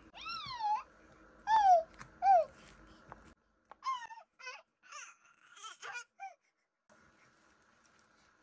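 A little girl's wordless, high-pitched sing-song vocal sounds: about eight short calls, most of them sliding down in pitch, over the first six seconds.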